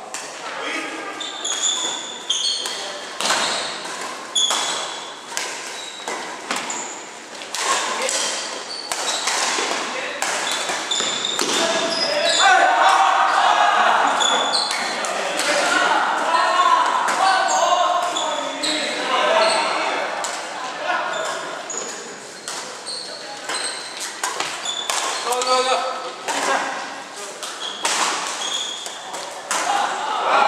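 Badminton rackets striking a shuttlecock in a doubles rally, sharp hits ringing in a large hall, with shoes squeaking on the court floor. Players' voices talk and call out, loudest about halfway through.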